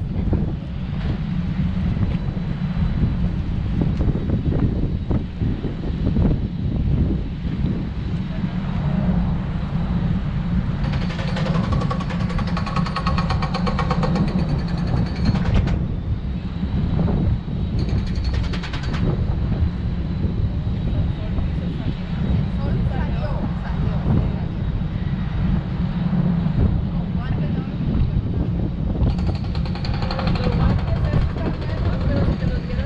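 Wind buffeting the microphone on the open deck of a moving river boat, a constant low rumble. Indistinct voices come through briefly around the middle.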